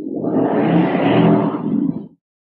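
A man's drawn-out, rough, breathy vocal sound close to the microphone, loud and lasting about two seconds before it cuts off.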